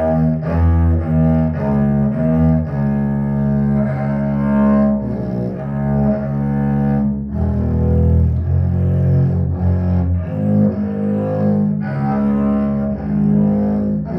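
Double bass played with a bow: a line of low sustained notes, some short and some held for a few seconds, with a brief pause about seven seconds in.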